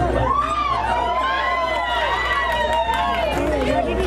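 A crowd pressing close, with many voices talking and shouting at once; one high voice lets out a long cheer that rises and then holds for about three seconds.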